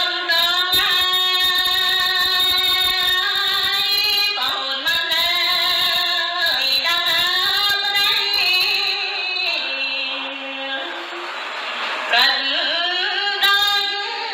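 A woman singing smot, the Khmer Buddhist sung recitation, solo in long held notes that bend slowly in pitch. A phrase sinks to a lower note and fades about ten seconds in, and a new phrase begins near the end.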